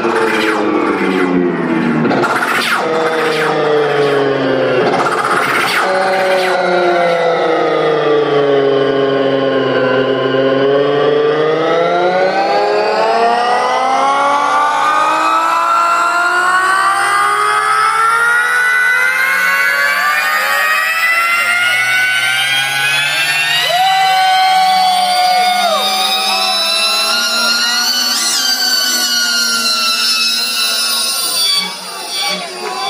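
A DJ's live mix played through a concert PA: one long held tone, with many layers, glides down in pitch for about ten seconds and then climbs slowly back up, with a few sharp hits in the first seconds.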